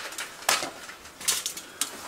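Metal kitchen tongs clicking and scraping against foil-lined trays as pieces of fried chicken are lifted into a takeout box, with a few sharp clicks.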